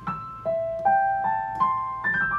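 Yamaha digital piano in its piano voice playing a slow right-hand Chinese pentatonic melody. About five notes come a little under half a second apart, each left ringing into the next.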